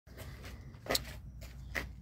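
Handling noise from a phone being moved, with two short rustles about a second apart over a faint, steady low hum.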